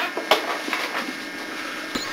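A few light knocks and rustles of handling as a man reaches down under a desk, over a steady low hum.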